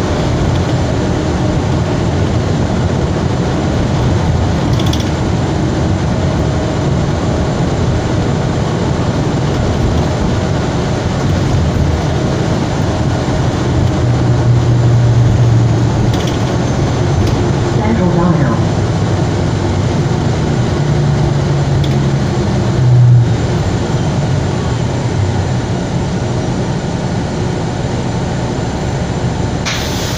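Interior of a 2020 Gillig BRT hybrid-electric city bus under way: a steady drivetrain hum and road noise with rattling from the cabin fittings. The low drone swells twice, a pitch glides as the bus changes speed a little past halfway, and there is a brief louder knock shortly after.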